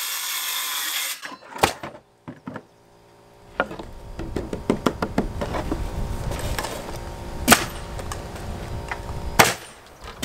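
A cordless circular saw finishes a cut through a sheet of radiant barrier plywood and stops about a second in. Knocks and clatter follow as the cut panel is handled, with two louder sharp knocks near the end.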